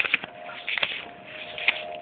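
Paper banknotes being counted by hand: a run of irregular crisp flicks and rustles of the bills.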